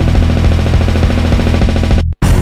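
Heavy metal music: distorted guitar and bass chugging very fast on one low note over rapid drumming.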